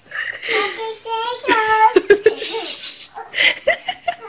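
A young child's high-pitched wordless vocalizing and giggling in short breathy bursts, with a few sharp clicks about halfway through.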